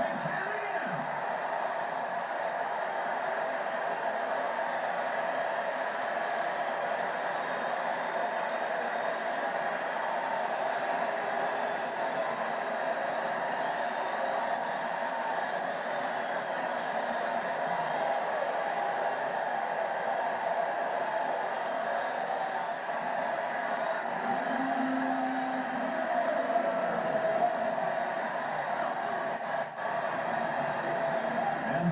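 Stadium crowd cheering steadily for a home run, heard through a television's speaker.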